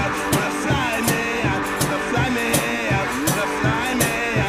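Instrumental passage of a rock song: a steady drum beat at about three strokes a second under stringed instruments, with some notes sliding in pitch.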